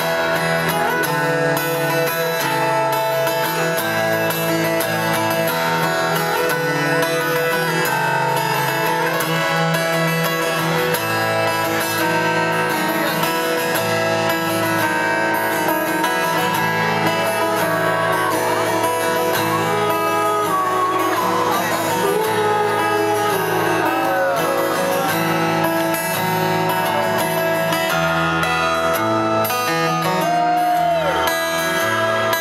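Acoustic guitar playing an instrumental passage of a song, strummed and picked, heard live through an arena sound system from within the audience.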